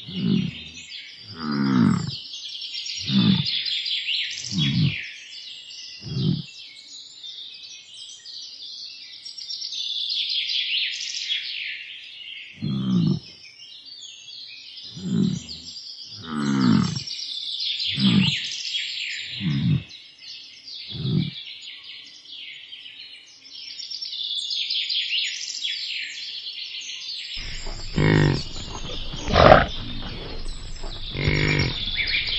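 Songbirds chirping steadily, with short, low grunts that fall in pitch and repeat about every second and a half, in two runs with a pause of several seconds between them. Near the end a rougher, low rumbling sound comes in.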